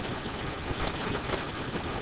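Steady low background noise with no distinct event: room tone and microphone hiss.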